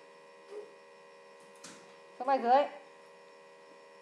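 Steady electrical hum in the recording, with a short spoken phrase about two seconds in.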